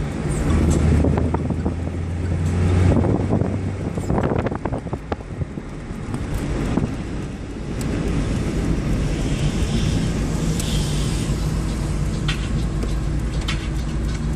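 Engine of a 1998 Tofaş 1.6 SLX, a 70-horsepower four-cylinder, running as the car drives, heard from inside the cabin with road noise. Its low hum climbs in pitch about eight seconds in, and there are a few short knocks along the way.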